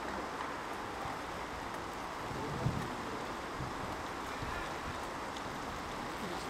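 Steady rushing noise of wind on the camera microphone over an outdoor football pitch, with a single low thump a little under three seconds in.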